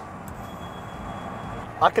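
Steady road and wind noise inside the cabin of the electric Renault Symbioz concept car cruising at motorway speed, with a faint high steady tone for about a second and a half.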